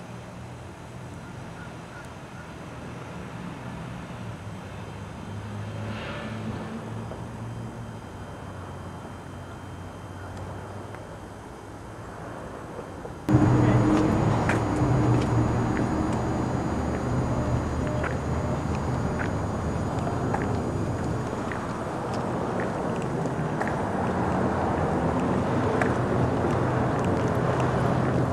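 Outdoor ambience with a steady low hum of distant road traffic. About halfway through it cuts suddenly to a louder, closer traffic rumble with scattered clicks.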